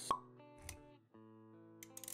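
Intro music for an animated logo: a sharp pop sound effect just after the start, a low thump about half a second later, then steady held notes.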